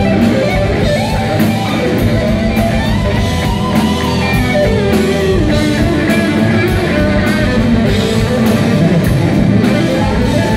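Live rock band playing loudly. An electric guitar carries a melodic lead line with pitch bends over steady drums.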